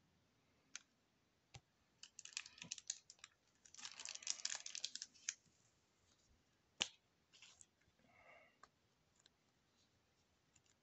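Quiet crinkling of plastic card packaging and a few sharp clicks as trading cards are handled by hand, with two short bursts of crinkling about two and four seconds in.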